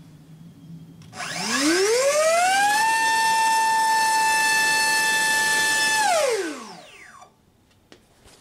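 Brushless electric motor of a HobbyZone AeroScout S2 spinning a Master Airscrew racing-series 6x4.5 three-blade propeller in a static thrust test. A whine rises in pitch as it throttles up about a second in, holds one steady high pitch at full throttle for about three seconds, then falls away as the motor spools down about a second before the end.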